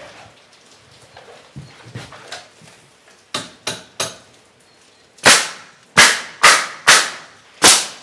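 Pneumatic nail gun driving nails through a wooden stringer board into the bench legs: a few light knocks, then three sharper cracks a little after three seconds in, then five loud shots in quick succession in the second half.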